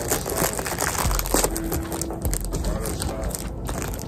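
A package being opened and handled: its wrapping crinkles and crackles in a dense run of small rustles.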